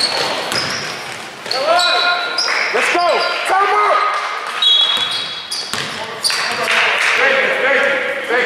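A basketball game being played: a ball bouncing on the court floor and sneakers squeaking, with players and onlookers shouting.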